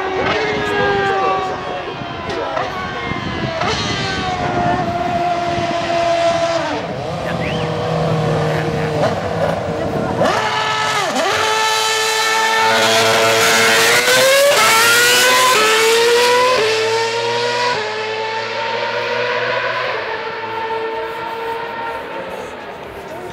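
Lotus Renault R31 Formula One car's V8 engine at high revs, the pitch stepping with each gear change. About ten seconds in it passes close with a sharp swoop in pitch, then accelerates away through a run of upshifts, loudest as it pulls away.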